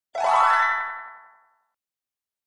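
A short cartoon-style "boing" sound effect for an intro logo: one pitched tone that swoops up at the start, then holds and fades out over about a second and a half.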